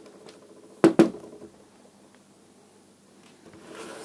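Two quick sharp clicks about a second in, from hands handling the cordless drill and the wire at its chuck; the drill motor is not running.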